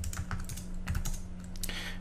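Computer keyboard keys clicking as short terminal commands are typed: a quick run of separate keystrokes with brief pauses between them.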